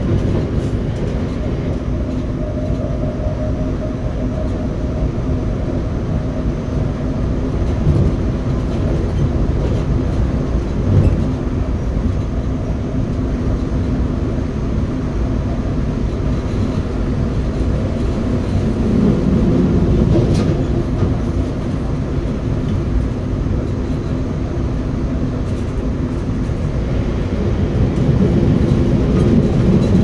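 RER B commuter train running along the line, heard from inside the driver's cab: a steady low rumble of wheels on rails, with one short knock partway through. The rumble swells a little about two-thirds of the way in and again near the end.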